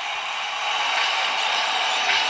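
Steady, even background noise of an arena basketball broadcast, with no distinct events: the low arena ambience of a sparsely attended game.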